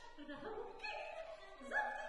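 Soprano singing with violin, a halting line of short notes that leap widely in pitch.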